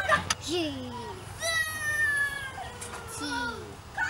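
A young child's voice: short vocal sounds and, about a second and a half in, one long high-pitched call that falls slightly in pitch.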